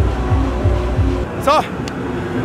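Electronic dance music with a deep kick drum, about three beats a second, each thud dropping slightly in pitch; the beat stops just over a second in, followed by a man's short "So!".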